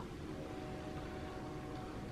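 Quiet room tone: a steady low electrical hum under faint hiss, with no distinct event.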